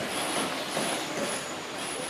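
Steady outdoor ambient noise, a rushing hiss like wind or distant traffic, with a faint high-pitched chirp repeating about twice a second.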